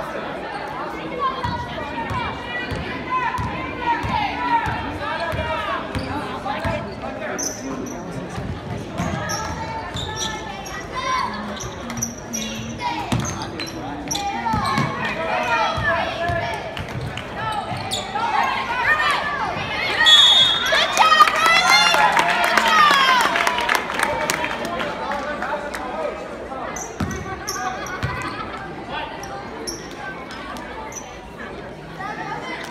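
A basketball dribbled and bouncing on a hardwood gym floor, under players, coaches and spectators calling out in a large, echoing gym. The voices and court noise swell to their loudest about two-thirds of the way through.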